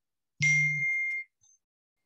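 A single ding: two steady high tones begin about half a second in and last under a second, with a low hum beneath their first half.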